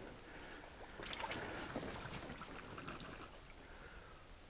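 Faint, irregular footsteps and small crunches on a dirt and stone trail, over a low steady outdoor hiss.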